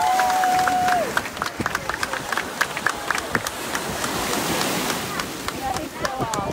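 A crowd of spectators clapping in a scattered round of applause, opening with one long drawn-out shout that falls off about a second in, over a steady wash of surf and wind.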